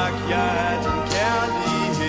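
A male singer singing a pop ballad in Danish over live orchestral backing.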